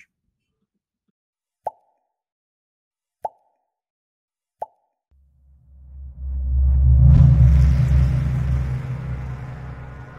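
Outro sound effects: three short pops about a second and a half apart, then a deep rumbling swell that builds from about halfway through, peaks a couple of seconds later and slowly dies away.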